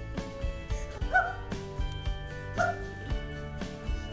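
Background music with a steady beat and held notes. Two short, high yelps cut through it, about a second and a half apart, near the middle.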